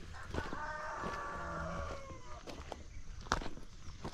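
A rooster crowing once, a single call of just under two seconds that drops in pitch at the end. A few short crunches follow, footsteps on a stony dirt path.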